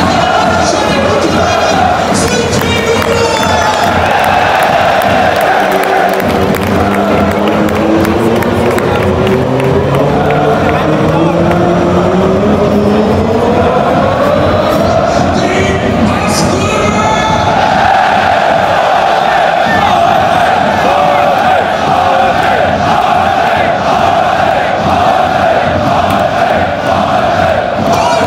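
Large football crowd singing and chanting loudly in unison, with a long sung phrase rising in pitch through the middle before settling back onto a steady held chant.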